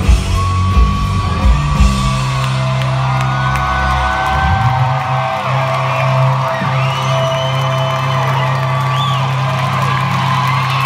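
Live rock band closing a song: a few last heavy drum and bass hits in the first two seconds, then a long held final chord with a steady bass note ringing on. Audience members whoop and yell over it.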